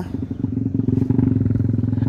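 An engine running steadily at constant speed, a low hum with a fine, rapid pulse.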